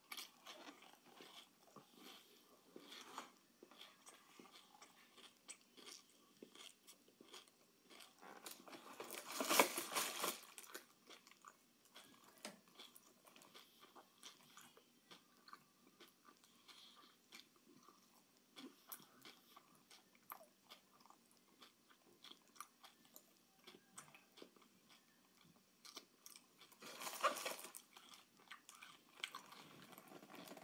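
Close, faint chewing and mouth sounds of a person eating Swiss Roll snack cakes, with many small smacking clicks. Two louder bursts of rustling, about ten seconds in and near the end, from the snack packaging being handled.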